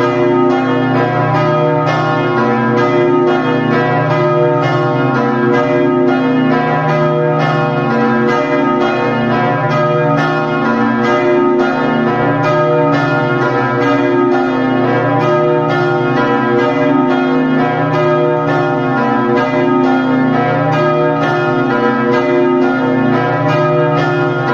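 Peal of the three bronze church bells of Tolmezzo cathedral, tuned B2, C#3 and D#3, swinging and rung with falling clapper (battaglio cadente). Their strokes come in quick succession and overlap into a steady peal, with each bell's hum ringing on beneath.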